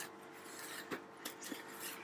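Faint rubbing and scratching from handling, with a few light clicks. It is most likely hands on the polystyrene fish box or on the hand-held phone.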